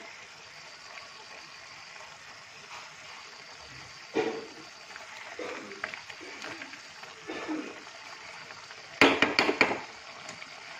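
Metal spoon stirring and scraping pork curry in an aluminium pan, soft and now and then. About nine seconds in comes a loud burst of rapid scraping and knocking against the pan.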